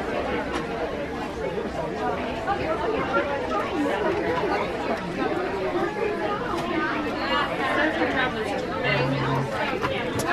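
Steady chatter of many people talking at once, a crowd's babble with no single voice standing out.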